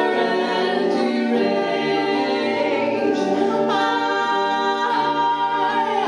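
Several voices singing together in close harmony on long held notes, moving to new chords a few times.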